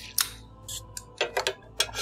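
Someone drinking after a toast: a few sharp clicks and small swallowing sounds from a sip taken from a cup.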